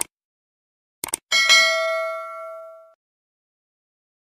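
Subscribe-button animation sound effect: a mouse click, then a quick double click about a second in, followed by a bell ding that rings out and fades over about a second and a half.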